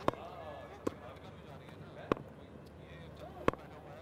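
Four sharp, isolated knocks, irregularly spaced about a second apart, over distant voices from the ground.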